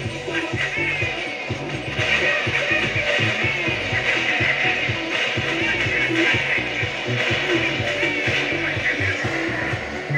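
Pop music from an FM radio broadcast, a song with a steady beat.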